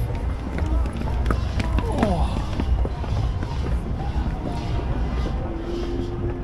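Busy city street ambience: a steady low rumble of traffic with voices of passers-by and footsteps on stone stairs, and a tone sliding down in pitch about two seconds in.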